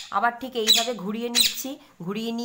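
A woman talking in Bengali, with no other sound standing out.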